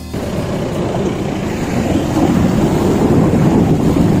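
Steady rushing noise of a shallow river running over rocks, with wind buffeting the microphone, growing slightly louder.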